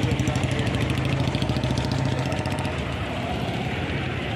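A motor vehicle engine idling steadily with a fast, even pulse, its level easing a little toward the end.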